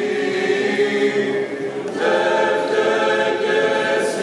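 Mixed choir of young women and men singing an Orthodox hymn unaccompanied, in long held notes. A fuller, louder chord comes in about halfway through.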